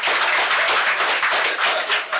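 Audience applauding: many hands clapping at once in a dense run.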